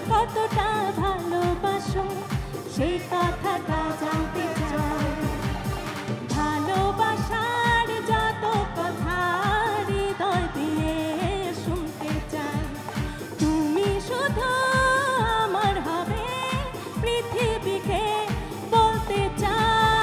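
A woman singing a Bengali song live into a microphone, backed by a band with guitars, keyboard and drums keeping a steady beat.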